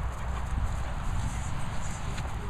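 Low, steady rumble of wind and handling noise on the microphone of a handheld camera as it swings down toward the grass.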